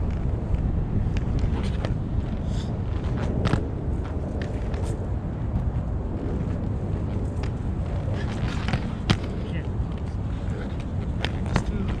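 Inline skate wheels rolling and clicking on concrete, over a steady rumble of wind on the microphone, with sharp knocks about nine seconds in and near the end.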